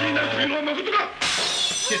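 Recorded voices talking, then, about a second in, a sudden bright crash of noise like something shattering, lasting under a second.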